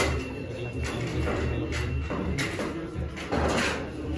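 Busy indoor room noise: a steady low hum with scattered short knocks and rustles. The sharpest knock comes right at the start.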